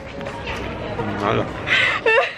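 Indistinct voices, with a short raspy vocal sound near the end.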